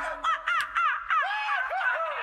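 A quick string of short, high, arching calls, about four a second, with a cawing quality.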